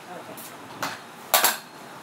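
Kick scooter clattering against the ramp: sharp metallic knocks a little under half a second and just under a second in, then a loud double clack about a second and a half in.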